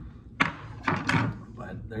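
A single sharp knock about half a second in, as something is set down on the table, followed about a second in by a brief low voice sound and another small click.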